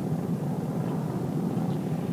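Steady low drone of a B-25 bomber's piston engines, heard from inside the cockpit.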